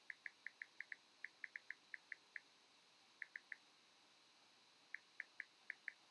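Short, high chirps in quick runs of several, about five a second, with gaps between the runs, over a quiet room.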